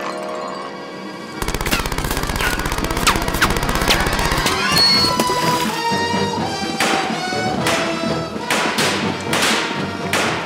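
Rapid machine-gun fire starts about a second and a half in and runs for about three seconds over dramatic background music. It is followed by single gunshots, roughly one every half second to a second, under the music.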